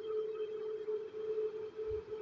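A steady hum at a single pitch over faint room noise.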